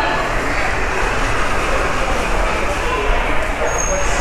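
Shopping cart rolling over a tiled store floor, a steady rattling rumble, with shoppers' voices in the background.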